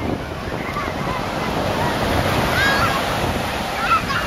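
Ocean surf breaking and washing up on a sandy beach in a steady rush. High voices call out briefly around the middle and again near the end.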